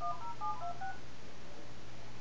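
Telephone keypad (DTMF) tones: a house phone on speakerphone dialing a number, about half a dozen quick two-note beeps in the first second, then only line hiss.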